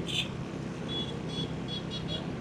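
Steady low engine and road rumble of a car driving through city traffic, heard from inside the moving car. A few faint, short high chirps come through in the second half.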